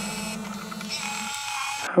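A steady low hum with faint high tones under it, dying away about a second and a half in; a man's voice begins right at the end.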